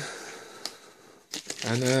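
Cardboard box handled in the hand: a soft rustle that fades over the first second, with one light tap, then a man's voice near the end.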